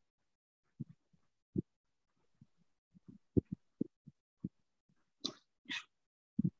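About a dozen faint, irregular low thumps, from a mouse and desk being handled near the microphone. Near the end come two short hissy noises.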